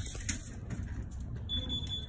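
A single short, high electronic beep about one and a half seconds in, over faint clicks and low room noise.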